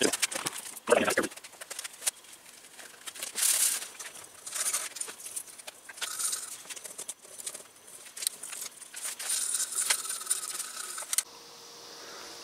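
Rags scrubbing and wiping a greasy steel hydraulic cylinder on a workbench: irregular rubbing and scuffing with scattered light metallic clinks and rattles.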